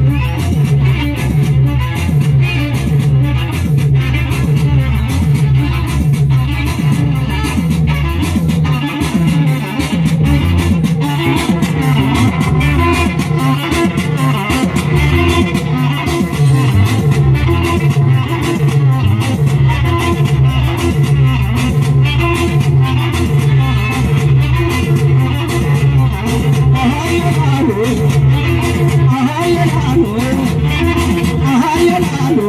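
Loud live Tigrigna band music through a PA system: electric guitar and bass over a steady, repeating beat, played as an instrumental stretch.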